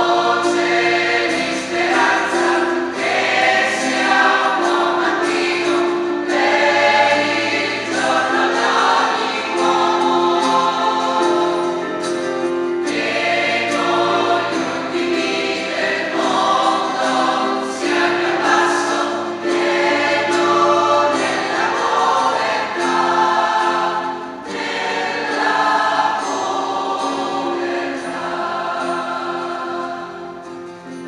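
Choir singing a hymn in a large church, in phrases of a few seconds each.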